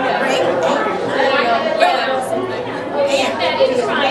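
Indistinct speech and the chatter of several voices in a large room.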